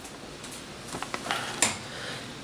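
A few light clicks and taps from handling, several close together in the second half, the loudest about one and a half seconds in.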